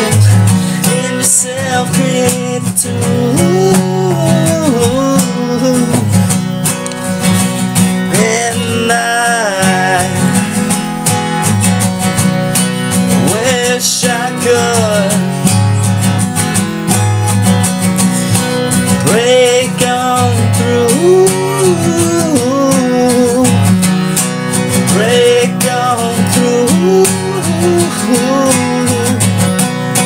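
Acoustic guitar playing a long instrumental passage of a song, strummed steadily with melodic lines rising and falling above.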